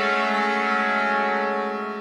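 Orchestral muted brass holding one sustained chord swell, fading away near the end.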